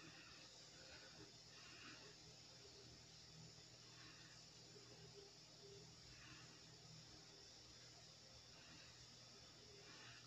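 Near silence: faint room tone with a few soft rustles of cotton crochet string being worked with a metal crochet hook.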